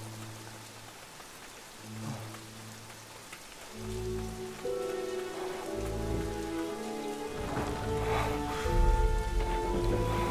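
Steady rain under a tense film score: from about four seconds in, deep low pulses and held notes swell into sustained chords that grow louder toward the end.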